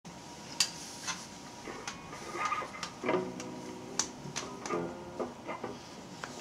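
Handling noise from an Epiphone Les Paul Special II electric guitar being picked up and settled on the lap: a series of sharp clicks and knocks. The strings ring out briefly a few times through the amplifier.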